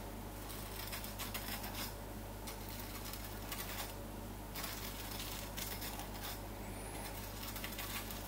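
Knife cutting into the crisp, golden gratinated cheese crust of a baked lasagna, giving a faint crunching crackle in several short spells.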